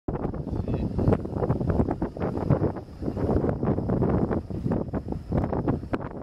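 Wind buffeting the microphone: an uneven, gusty rumble that surges and drops irregularly.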